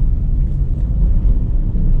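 Steady low rumble inside the cabin of a Hyundai HB20 1.0 hatchback driving slowly over a rough, broken street surface: tyre, suspension and engine noise, with no knocks or rattles from the suspension.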